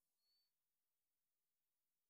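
Near silence after the song has ended.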